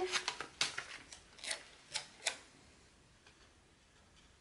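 Handling of paper stickers and a sticker sheet over a planner page: a handful of light, sharp clicks and paper taps in the first two and a half seconds, then quiet handling.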